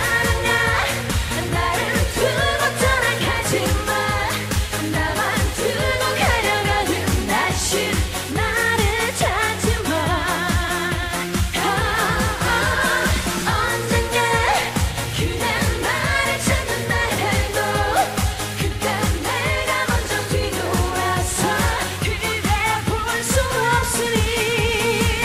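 A woman singing a Korean trot song into a microphone over a dance-pop accompaniment with a steady, fast beat, her held notes wavering with vibrato.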